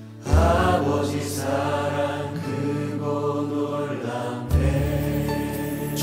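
Live worship band and singers performing a slow Korean worship song, with sustained sung lines over keyboard and bass. A deep bass swell comes in about a third of a second in and again about two-thirds of the way through.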